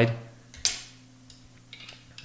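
A sharp click about half a second in, then a few faint ticks: a glass microscope slide being handled and set down on the microscope stage.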